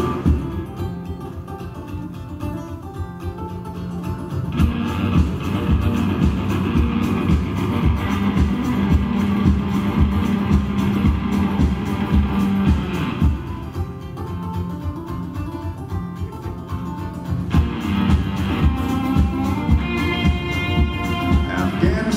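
A live band plays an instrumental passage with no vocals: acoustic guitar strummed over drums keeping a steady beat, with sustained low notes and, in the last few seconds, higher lead notes.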